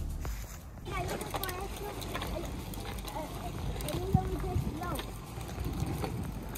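A young child's high voice talking or calling out in short, unclear snatches over a low, steady rumble.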